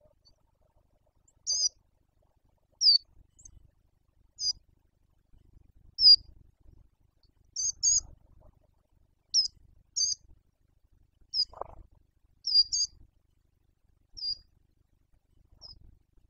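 A bird calling repeatedly with short, high-pitched notes, about one every second and a half, some of them given in quick pairs.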